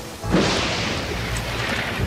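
A thunderclap about a third of a second in: a sudden crash that fades over about a second and a half, over rain and a country song playing on the soundtrack.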